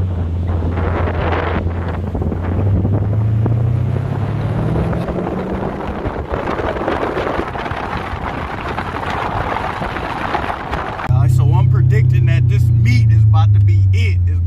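Car engine pulling with the window open: a steady low engine note that rises in pitch a few seconds in as the car speeds up, under a rush of wind and road noise. About eleven seconds in the engine note becomes louder and steadier.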